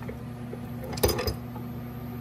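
A steady low hum runs under a short cluster of clicks and a knock about a second in, like a metal tool shifting against suspension parts.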